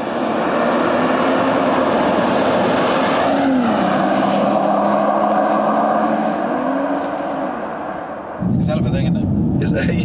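BMW M240i's B58 turbocharged straight-six heard from the roadside as the car drives along the road, a steady engine note with tyre noise that briefly swells in pitch twice. About eight seconds in it cuts abruptly to the car's cabin sound with voices.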